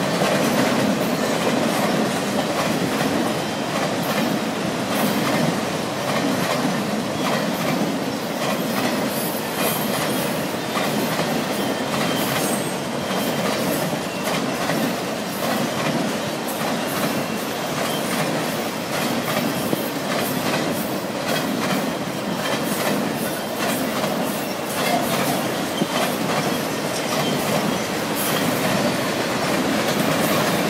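Freight train cars, mostly autoracks, rolling past at close range: a steady rumble of steel wheels on rail, with a constant run of clicks and clacks over the rail joints.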